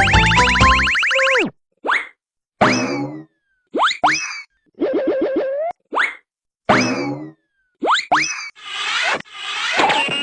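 Cartoon sound effects. Background music cuts off with a falling slide about a second in, followed by a string of about eight short boings and rising zips with silent gaps between them, ending in a longer swelling whoosh.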